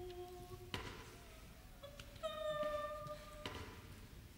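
Choir singing softly: held notes one after another at changing pitches, the longest and loudest in the second half, with a few short knocks in between.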